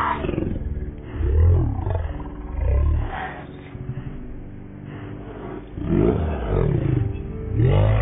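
Roar sound effect, repeated about five times, each roar rising and then falling in pitch, with a dull, muffled sound.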